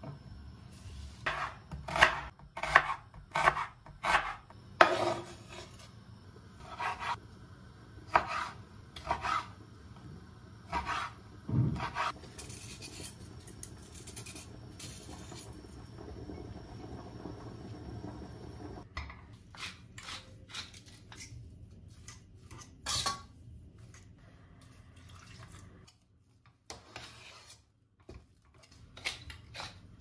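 A kitchen knife slicing a red onion on a wooden cutting board, heard as a run of uneven knocks over the first ten seconds or so. Then comes the scraping of a julienne peeler shaving strips off a carrot. Near the end, a fork mashes boiled potatoes and clinks against a stainless steel pot.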